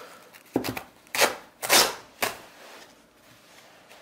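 Leatherman Raptor rescue shears with a finely serrated lower blade slicing through denim, pushed along the trouser leg without cutting strokes. There are several short, scratchy tearing sounds in the first two seconds or so, then it goes quiet.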